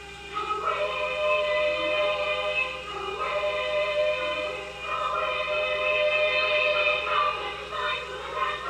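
Film score music: a boys' choir singing long held notes that change every couple of seconds.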